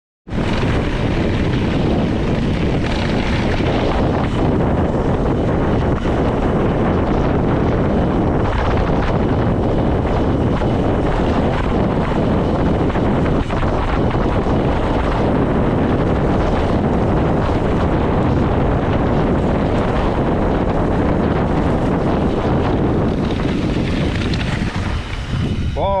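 Wind buffeting a handlebar-mounted action camera's microphone as a mountain bike rides fast down a gravel track, with the tyres rattling over loose stones beneath it. The noise is loud and continuous, with occasional sharper knocks from the rough surface.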